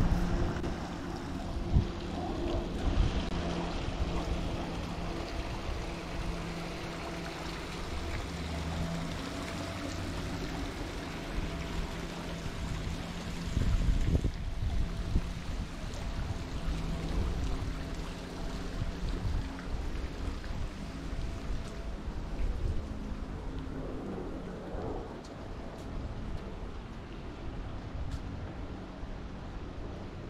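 Outdoor ambience with gusty wind on the microphone, under a steady mechanical hum of several tones that is strongest in the first half and fades away after about twenty seconds.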